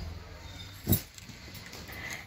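Suit fabric being handled and turned over, the cloth rustling faintly, with one short, sharp sound about a second in.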